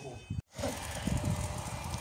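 Steady outdoor background noise with faint voices, broken by a brief complete dropout about half a second in where the video cuts.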